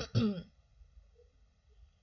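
A person clearing their throat in a couple of quick bursts right at the start.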